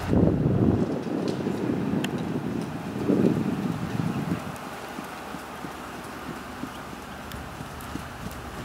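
A horse trotting on sand arena footing, its hoofbeats soft and dull. Low rumbles of wind on the microphone come in the first second and again around three to four seconds in.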